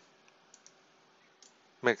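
Three faint computer mouse clicks over a low background hiss, two close together about half a second in and one more about a second and a half in.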